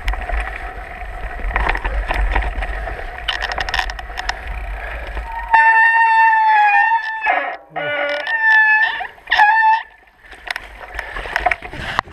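Mountain bike rolling over rough singletrack, with a rattling rumble and clicks from the bike and trail. About halfway through the rumble stops and a loud, high squeal sets in, in several stretches that shift in pitch, typical of disc brakes squealing as the bike slows.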